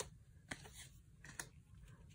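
Near silence broken by a few faint, light clicks of 1987 Topps cardboard baseball cards being slid through a hand-held stack, one at the start, one about half a second in and one near the middle.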